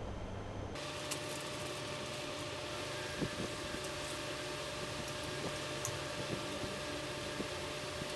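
Steady room noise with a faint hum, which cuts in abruptly under a second in, and a few faint light knocks from plastic bottles and a funnel being handled on a countertop.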